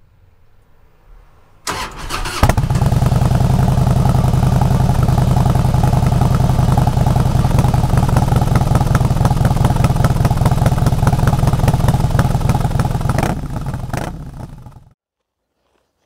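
A motorcycle engine starts about two seconds in and runs steadily with a fast pulsing beat, then fades out shortly before the end.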